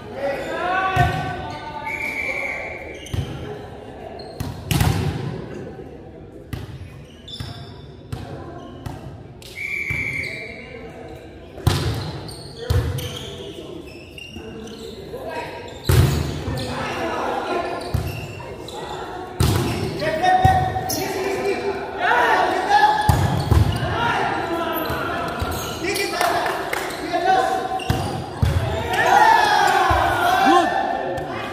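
Volleyball rally in a gym: sharp ball strikes from serves, sets and spikes, one of the loudest as a spike goes over the net about halfway through. The hits echo in the large hall among players' shouts and calls, which grow busier in the second half.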